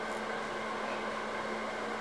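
Steady low hum with an even hiss underneath: constant room background noise, with no distinct event standing out.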